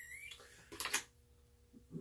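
Two quick knocks about a second in, as makeup products are handled and picked through; between them a quiet room with a faint steady hum.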